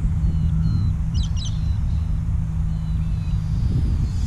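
Low rumble of wind on the microphone under a steady low hum that stops near the end, with a quick run of bird chirps a little over a second in.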